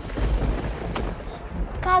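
Thunderclap sound effect: a sudden loud crack with a deep rumble, and a sharper crack about a second in.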